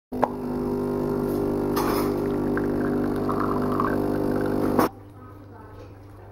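Automatic espresso machine's pump running while it brews coffee through the spout into a glass, a steady hum that stops abruptly about five seconds in.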